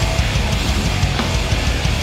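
Hardcore band playing live with distorted electric guitar, bass guitar and drum kit, an instrumental passage with no vocals.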